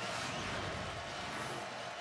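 Steady stadium crowd noise: an even din with no single sound standing out.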